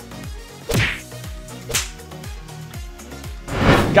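Background music with three whoosh transition effects sweeping over it, about a second in, near the middle and, loudest, just before the end.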